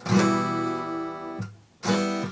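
Acoustic guitar strummed: a chord struck at the start rings steadily for about a second and a half, is cut off, and a fresh strum comes near the end.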